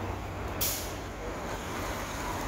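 Steady city traffic rumble, with one short, sharp hiss of air brakes from a bus or other heavy vehicle about half a second in.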